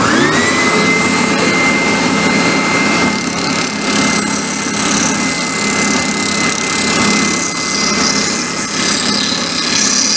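Benchtop spindle sander switched on, its motor whine rising to a steady pitch within half a second, then running as a curved plywood edge is pressed against the sanding drum to smooth out saw marks before routing.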